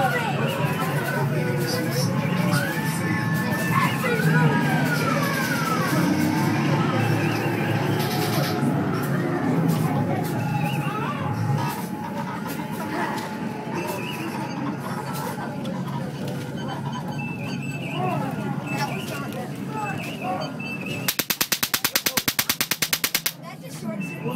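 Sci-fi haunted-house soundtrack of electronic music and effects with voices, with gliding electronic tones. About 21 seconds in, a zapper effect lets off a rapid train of buzzing pulses for about two seconds, then cuts off suddenly.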